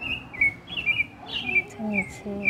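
A small bird chirping repeatedly: short high notes that slide down in pitch, several a second.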